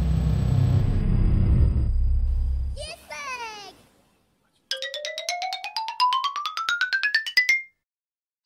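Comic editing sound effects: a loud low rumble that fades out about three seconds in, a short falling warble just after, then following a brief silence a rising whistle-like tone with rapid clicks that climbs for about three seconds and stops suddenly.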